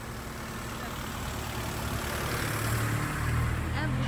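A road vehicle passing on the street: engine hum and tyre noise grow steadily louder and are loudest near the end.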